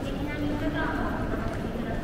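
Dense crowd of commuters walking through a busy train-station concourse: a continuous patter of many shoes on a hard floor, with a background murmur of voices.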